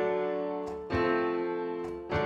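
Piano chords played on a keyboard: a D major chord rings and fades, then an F major chord is struck about a second in and fades. The two are chromatic mediants, major chords whose roots lie a third apart.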